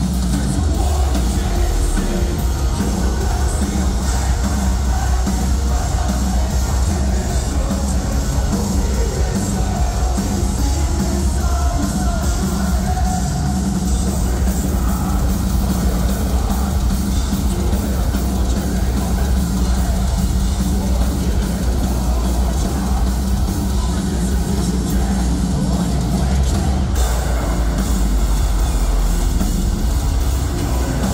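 A metalcore band playing loud and without a break through a club PA, with drums, heavy guitars and vocals. The sound is bass-heavy and dense, as a phone in the crowd picks it up.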